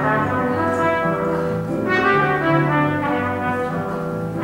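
Trumpet playing a jazz solo, with accompaniment carrying lower notes beneath it.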